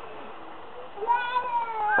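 One high-pitched, drawn-out vocal cry about a second in, lasting under a second.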